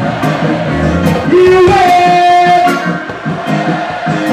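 Live reggae band playing loudly: a drum kit with cymbal hits, bass, and electric guitar under held melodic lines.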